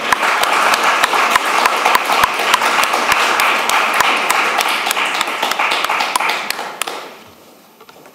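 Audience applauding, dying away about seven seconds in.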